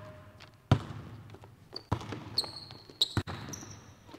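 Basketball bounced on a hardwood gym floor during live one-on-one play: a few separate bounces about a second apart, with short high squeaks of sneakers on the court between them.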